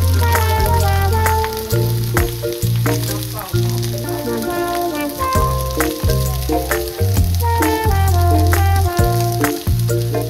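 Eggs frying in a nonstick pan, a steady sizzle with small crackles, over background music with a melody and a steady bass.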